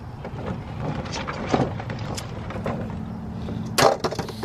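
Christmas ball ornaments clicking and knocking against one another and the lantern as they are pushed into a glass lantern. The clicks come irregularly, with a louder knock near the end.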